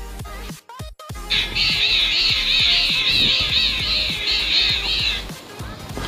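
Background music with a short break about a second in, followed by a high, wavering melody line that lasts about four seconds.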